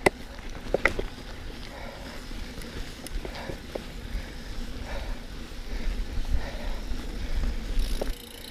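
Mountain bike ridden along a dirt trail: a low steady rumble from the ride, with a few sharp clicks and rattles from the bike, the loudest right at the start.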